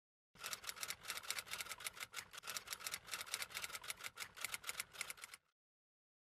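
Typewriter keystroke sound effect: a rapid run of clacking keystrokes, several a second with short pauses, starting just after the beginning and stopping shortly before the end.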